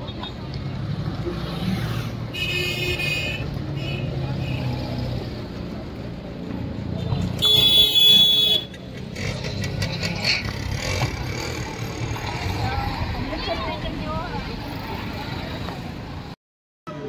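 Busy roadside traffic with vehicles running and people talking. A horn toots briefly about two seconds in, and a louder horn sounds for about a second around the middle.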